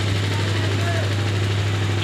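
A steady low hum with faint crowd voices.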